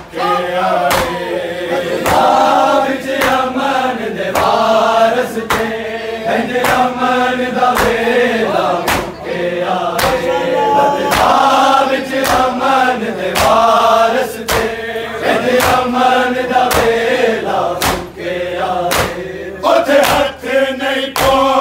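A group of men chanting a Punjabi noha in chorus, with loud chest-beating (matam) slaps keeping a steady beat of roughly one to two strokes a second.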